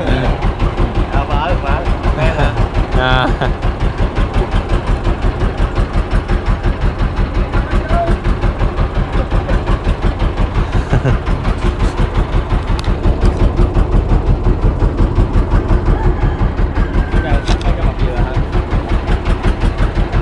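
Boat engine running steadily under way, a low sound with a fast, even pulse.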